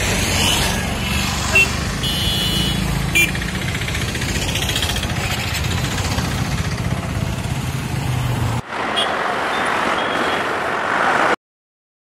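Street traffic with a motorcycle engine running close by and a short horn toot about two seconds in. About eight and a half seconds in, the sound cuts to a hissier traffic noise, which cuts off suddenly about three seconds later.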